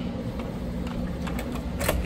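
Electronic RFID door lock released and its lever handle pressed: a few light clicks near the end, the last and loudest just before the door opens, over a steady low mechanical hum.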